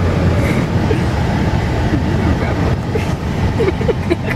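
Steady low road and engine rumble heard from inside a moving car's cabin.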